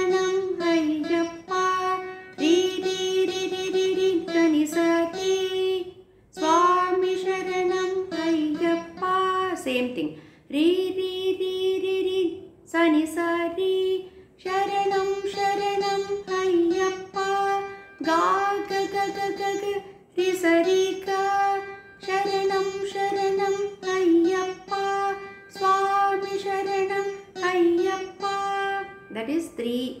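Saraswati veena played solo in a Carnatic melody: plucked, sustained notes re-struck about every second, with pitch slides and ornaments between them and a few brief breaks, near 6 and 10 seconds in.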